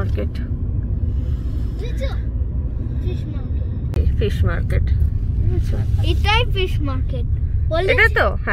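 Steady low rumble of a moving car heard from inside the cabin: road and engine noise while driving.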